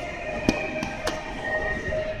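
Two sharp plastic clicks about half a second apart as a compact camera is handled on its anti-theft display mount, over steady background music.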